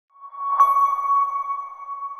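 An electronic chime: one high, steady ping struck about half a second in, ringing on and slowly fading, with a soft haze of noise around it.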